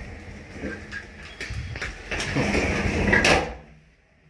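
Elevator door sliding along its track, with a few light clicks in the first second and a half. The rumble grows louder and stops suddenly about three and a half seconds in.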